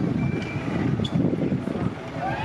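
Steel roller coaster train (a Gerstlauer Infinity Coaster) running along its track, a steady low rumble, with people talking nearby and a brief thin high tone near the start.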